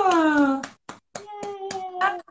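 A woman's voice in a long exclamation that falls in pitch. It is followed by about five quick hand claps, roughly four a second, over a held vocal tone.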